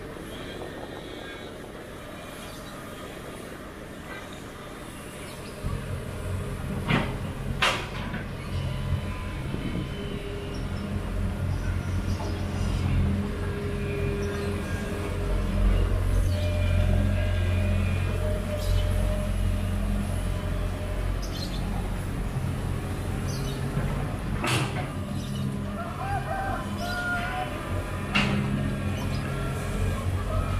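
Diesel engine of a Sumitomo SH210 amphibious pontoon excavator running close by. It picks up and runs louder from about six seconds in, as it works. A few sharp knocks come at about seven seconds and again near twenty-five seconds.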